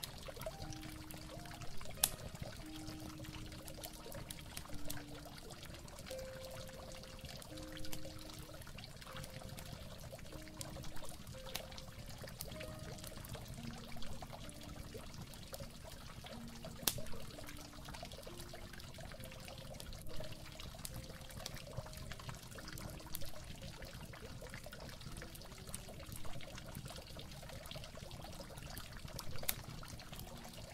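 Steady trickling, pouring water under a slow, soft melody of single held notes, with a few brief sharp ticks.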